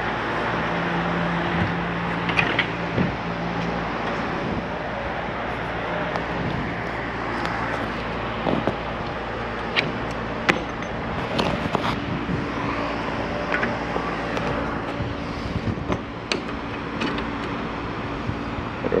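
A few sharp metal clicks from cotter pins being handled and pushed into the steel brackets of an RV ramp-deck rail, over a steady low hum.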